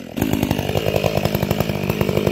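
Chainsaw cutting at the base of a tree trunk. Just after the start the engine drops from a rev to a steady, lower-pitched run with a rapid, even throb.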